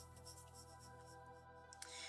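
Faint scratching of a coloured pencil shading on paper in light back-and-forth strokes, under soft background music with sustained tones.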